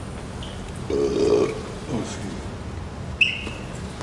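A short vocal sound from a person about a second in. Near the end comes a single sharp, ringing ping of a table tennis ball bouncing.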